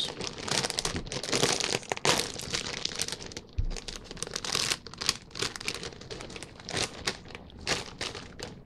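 Plastic chip bag crinkling as it is handled and pulled open at the top, an irregular run of crinkles and crackles with several louder bursts.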